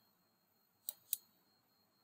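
Two short, sharp clicks about a quarter of a second apart on a computer as the lecture slide is advanced.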